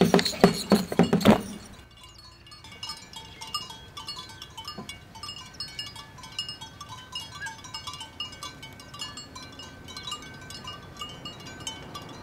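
A loud, rhythmic clatter for the first second and a half. Then many small metal bells clink irregularly on a few fixed notes: bells on a herd of cattle on the move.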